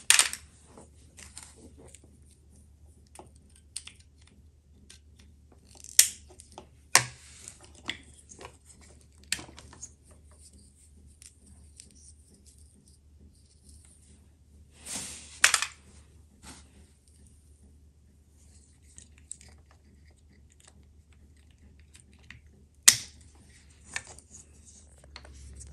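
Sharp plastic clicks and taps from bulb sockets being twisted, removed and handled against the back of a plastic headlight housing, about half a dozen loud ones spread out with smaller ticks between, over a faint steady low hum.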